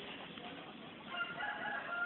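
A rooster crowing: one long, drawn-out call that starts about a second in.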